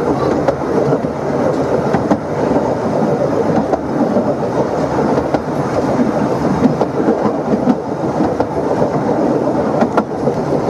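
Narrow-gauge railway carriage running along the track, heard from on board: a steady rumble from the wheels and coach, with faint scattered clicks from the rails.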